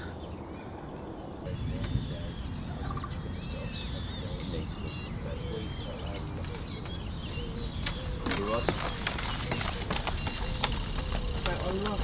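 Open lakeside ambience: birds calling and singing over a low wind rumble on the microphone. In the last few seconds come a few knocks of footsteps on the wooden jetty boards.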